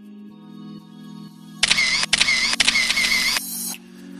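Soft sustained ambient music, then about a second and a half in a loud camera sound effect lasting about two seconds, in about four strokes.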